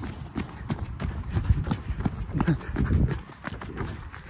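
Quick, irregular footfalls of a person running on a dirt road, with jostling thumps on a handheld phone carried by the runner. A couple of brief voiced sounds come just past halfway.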